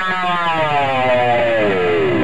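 Electric guitar sustaining one note that glides smoothly and steadily downward in pitch.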